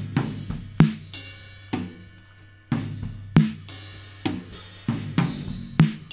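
Drum kit playing back in a steady groove of kick, snare, hi-hat and cymbal hits, with sharp attacks that ring out between strokes. The snare runs through Ableton's Glue Compressor at a fast attack setting, which makes its hit really snappy.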